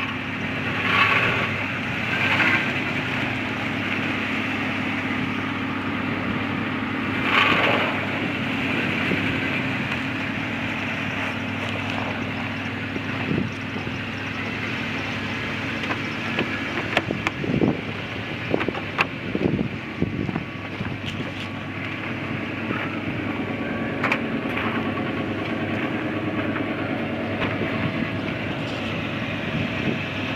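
Toyota Sequoia's 4.7-litre V8 engine idling steadily, with a few brief louder noises over it near the start and scattered knocks midway.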